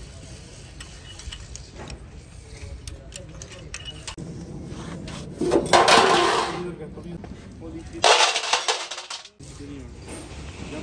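Metal clinking and light tool clicks on a steel transmission housing, then two loud bursts of metal scraping and clatter, one about halfway through and a shorter, abruptly cut one near the end.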